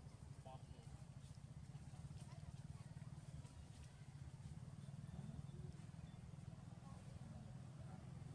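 Near silence: a faint, steady low hum of outdoor room tone, with a few faint scattered small sounds.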